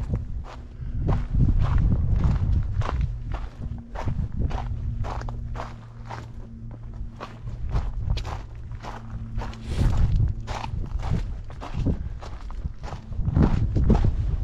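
Footsteps crunching on a rocky, gravelly dirt trail at a steady walking pace, about two steps a second.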